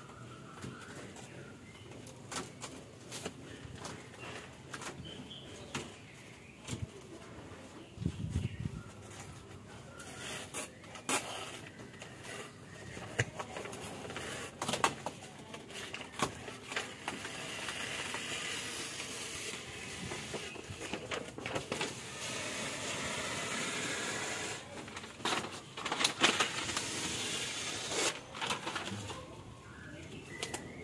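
Foil-faced rubber-sponge sound-deadening sheet crinkling as it is handled and pressed by hand onto a car's bare steel roof panel. Irregular taps and clicks run throughout, with a longer stretch of rustling in the second half.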